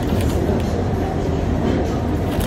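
Steady low rumble of indoor restaurant background noise, with no distinct sound standing out.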